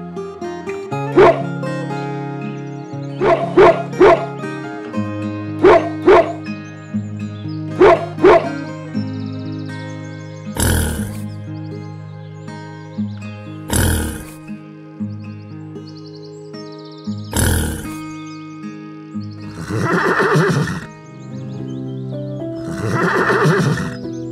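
Gentle background music with steady held notes, overlaid by animal calls: short sharp calls in quick pairs during the first eight seconds, three single louder calls in the middle, and two longer calls near the end.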